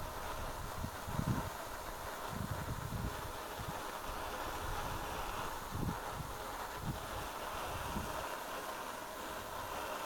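Borde self-pressurised petrol stove burning near full flow with a steady rushing hiss, heating a mess tin of water close to the boil. Several short low thumps of wind on the microphone break in through it.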